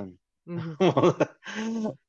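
Speech only: conversation over a video call, with a few words the recogniser did not catch.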